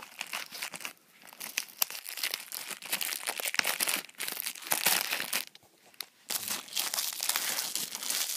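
Plastic shrink-wrap crinkling and tearing as it is pulled off a Blu-ray case, in dense crackly bursts with a short lull a little past halfway.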